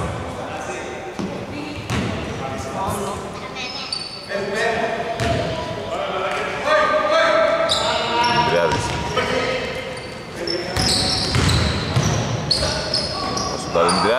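Basketball bouncing on a hardwood court, with players' voices calling out and short squeaks of sneakers, all echoing in a large sports hall.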